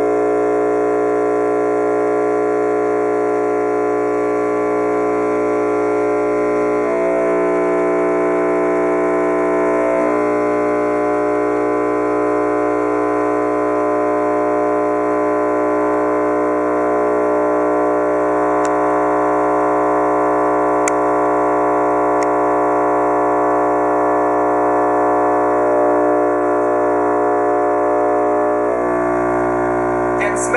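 DC Audio XL 18-inch subwoofer, wired to 2 ohms and fed straight from a wall socket, buzzing loudly and steadily at mains frequency with a harsh stack of overtones, its voice coil being overdriven. The buzz shifts in tone for a few seconds about seven seconds in, and again near the end.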